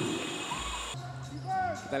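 Indoor basketball game sound: low court and crowd noise with a single low thud about half a second in, a ball bouncing on the hardwood. A commentator's voice comes back near the end.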